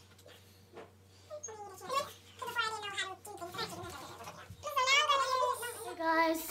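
A run of drawn-out, wavering meowing calls. They start about one and a half seconds in and are loudest near the end.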